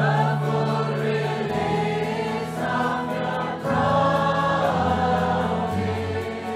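A choir sings a worship song over instrumental accompaniment, the voices coming in at the start after a guitar-led introduction.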